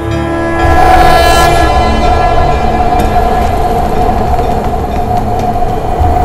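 A loud, steady horn-like tone with a stack of overtones comes in about half a second in and holds over a low rumble. It is a dramatic sting in a TV serial's background score.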